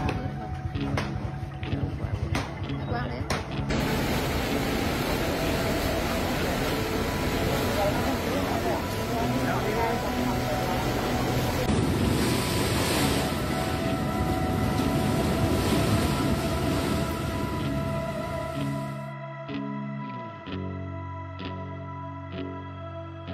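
Typhoon-force wind and heavy rain thrashing trees: a dense, steady rush that starts about four seconds in and cuts off suddenly near the end. Soft background music runs underneath throughout and is left on its own at the close.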